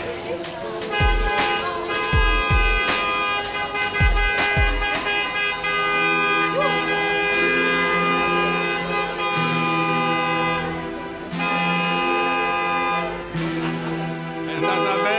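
Several car horns held in long, overlapping blasts at different pitches, breaking off briefly and starting again: celebratory honking for newlyweds. Under them is music with a thumping beat in the first few seconds.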